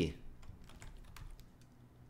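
Computer keyboard typing: several faint, separate key clicks as a command is entered in a terminal.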